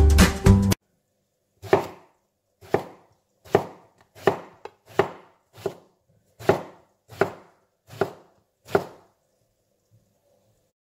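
Chef's knife slicing an eggplant into rounds on a wooden cutting board: about ten crisp cuts, roughly one every three quarters of a second. Background music with guitar stops just before the cutting begins.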